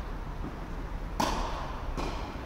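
A tennis ball struck sharply by a racket a little over a second in, ringing briefly in the large hall, over a steady low hum.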